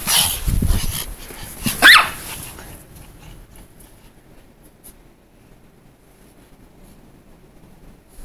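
Pomeranian giving one sharp, rising yip about two seconds in, after a burst of rustling and rumble.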